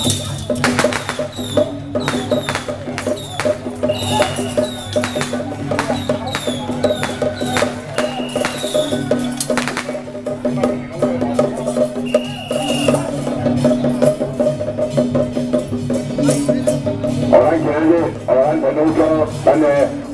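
Traditional temple-procession percussion: a drum and other percussion beat a fast, steady rhythm, over a steady pitched drone, with a few short high tones here and there.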